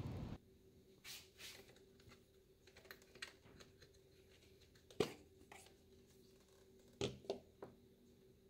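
Spark plug wire boots being pulled off the plugs of a 1997 Honda Civic engine and the wires handled: faint scattered clicks and rustles, with a sharper click about five seconds in and a quick few more near the end.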